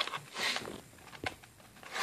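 Cardboard packaging being handled as a baseball and its certificate card are pulled out of a small box: a short rustle about half a second in, then a single light tap a little past a second.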